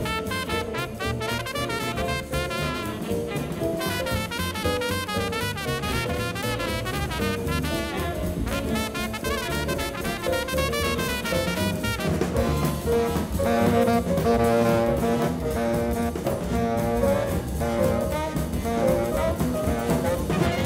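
A big jazz band plays live: saxophones and trumpets over drums. A wavering horn line runs first, and about twelve seconds in the horn section comes in with held chords.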